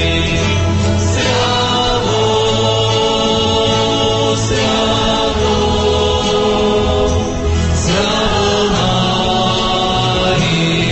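A choir singing sacred music in long held chords that change every second or two.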